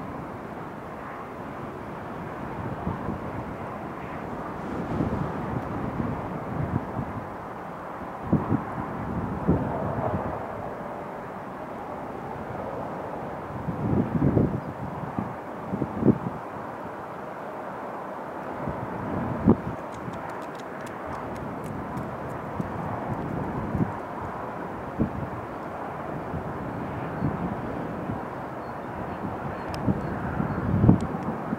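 Boeing 747SP's four Pratt & Whitney JT9D turbofans running at takeoff thrust, heard from afar as a steady rushing noise as the jet starts its takeoff roll, with irregular low buffeting thumps of wind on the microphone.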